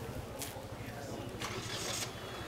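A low, steady engine hum with an even pulse, like a vehicle idling. It is overlaid by a short click about half a second in and a louder rustling hiss in the last half second.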